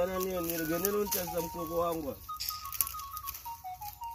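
Speech for about two seconds, then background music: a simple high tune of single notes stepping down in pitch.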